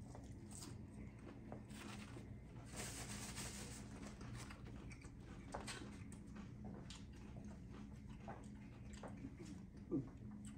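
Faint chewing and the light clicks of a plastic fork picking at salad in a plastic clamshell container, heard over a low steady room hum.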